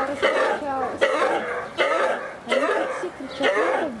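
Fallow deer calling: a string of loud, short pitched calls, about one a second. These are the contact calls by which does and their fawns find each other in the herd.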